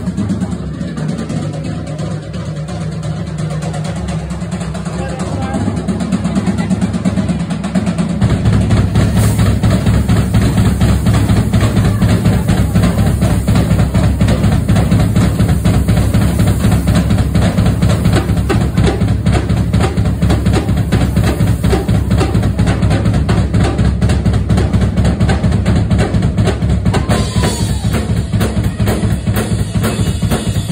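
Rock drum kit played live, fast and busy, with rapid bass drum strokes packed closely together; the playing grows louder and heavier about eight seconds in.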